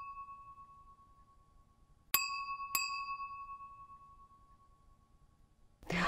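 A bell-like ding chime, struck twice in quick succession about two seconds in, each ring dying away slowly; an earlier ding is still fading at the start.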